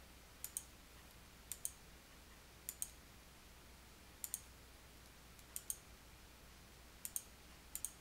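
Faint computer mouse-button clicks, each a quick press-and-release double tick, coming about every second and a half, seven times.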